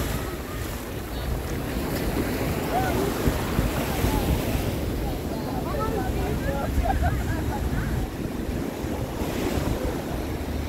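Ocean surf breaking and washing up the beach on a rising tide, a steady rushing noise with low rumble, with wind buffeting the microphone. Faint distant voices are in the background.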